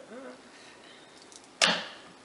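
Wire soap cutter's plywood arm pulled down through a loaf of cold process soap, ending about one and a half seconds in with one sharp knock as the arm bottoms out on the cutter's frame; the knock dies away quickly.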